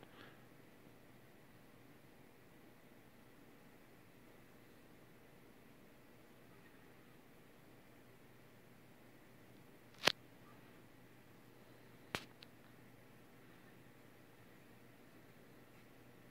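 Near silence: faint room tone, broken by two sharp clicks about ten and twelve seconds in.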